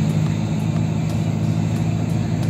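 Car engine and tyre noise heard from inside the cabin while driving: a steady low drone.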